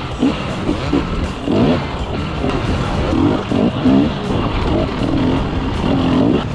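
Enduro dirt bike engine revving up and down in short bursts as the throttle is worked over the track's dirt and log obstacles, with constant wind and track noise.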